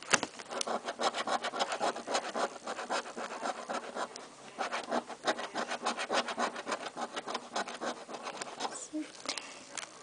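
A coin scratching the coating off a paper scratch-off lottery ticket in quick, repeated strokes, stopping shortly before the end.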